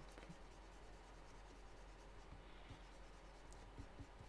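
Near silence: a faint steady room hum with a few soft, scattered stylus strokes on a digital drawing surface.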